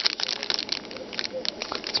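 Thin clear plastic bag crinkling in the hand as the bagged speaker mic is turned over: a run of small, irregular crackles and rustles.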